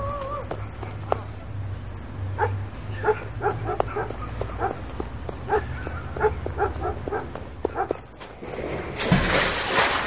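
A dog barking in quick repeated barks, about two a second, through the middle of the stretch. Near the end comes a loud splash as a person plunges into water.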